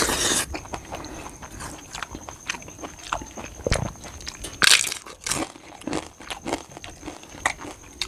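Close-up eating sounds: chewing and small clicks throughout, with a loud crisp crunch just before five seconds in as a fried papad is bitten.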